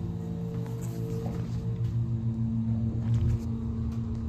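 Montgomery hydraulic elevator running on an upward ride, heard inside the cab: a steady low hum from the pump motor, with a few faint higher tones over it.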